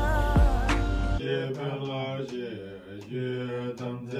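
Background music with a beat cuts off about a second in and gives way to Tibetan Buddhist prayer recitation: voices chanting on a steady low pitch, with scattered sharp clicks.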